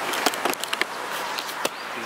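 A quick run of sharp clicks and taps in the first second, with one more near the end, over a steady outdoor hiss: handling noise as a handheld camera is picked up and turned around.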